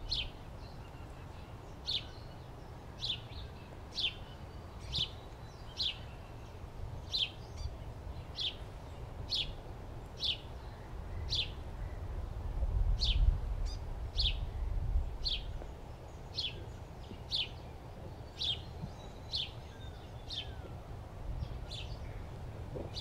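A bird repeating a short, high, downward-slurred call about once a second, over a low rumble that grows louder about halfway through.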